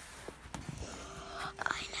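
A girl whispering close to the microphone, starting about a second in.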